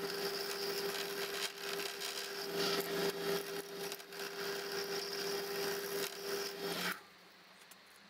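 Wood lathe running with a steady hum while a turning tool cuts into a spinning beech block, giving a continuous scraping, rasping cut. The sound cuts off suddenly about a second before the end.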